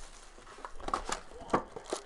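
Plastic shrink-wrap crinkling and tearing as it is pulled off a sealed trading-card hobby box, in a string of sharp crackles from about a second in, the loudest just past halfway.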